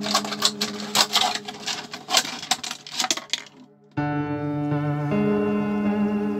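Scissors cutting up a plastic bottle, with irregular crackling and snapping of the plastic over background music. After a brief gap about four seconds in, only music with sustained chords remains.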